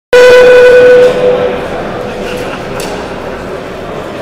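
Loud electronic beep held steady in pitch for about a second, then dying away as it echoes round a large hall: the start tone of an RC car race. A steady hiss of background noise continues beneath it.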